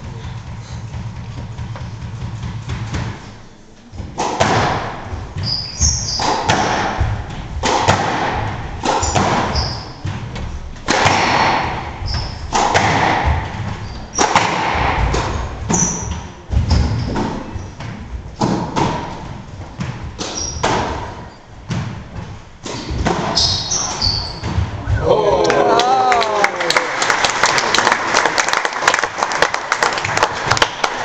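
Squash rally: the ball striking racket strings and court walls in repeated irregular thuds, with sneakers squeaking on the wooden floor. Near the end the rally stops and the crowd claps and calls out.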